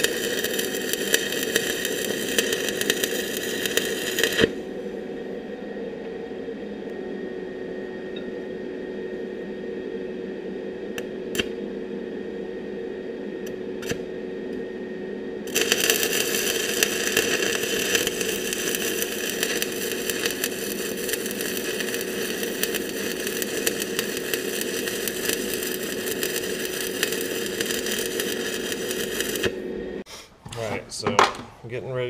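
Stick-welding arc running over a steady hum. The arc goes out about four seconds in, leaving the hum and a few clicks. It strikes again at about fifteen seconds and runs until just before the end.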